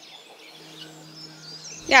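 Faint outdoor ambience with small birds chirping, under a faint steady low hum.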